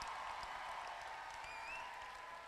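Audience applause, an even patter that slowly dies down.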